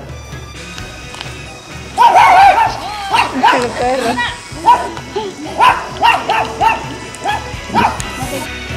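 Small dogs yapping: a string of short, high barks that begins about two seconds in and repeats irregularly, once or twice a second.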